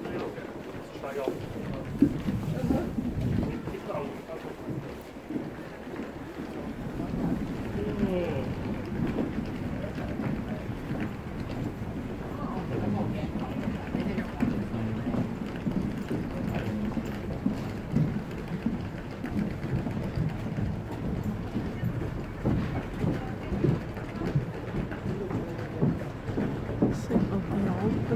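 Indistinct chatter of people walking past close by, over a steady low background noise.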